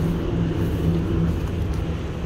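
An engine running steadily at constant speed: a low, even drone with a faint hum.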